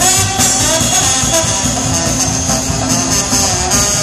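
Live jazz band playing loudly, with a trombone among the instruments and a steady rhythm section underneath, between sung verses.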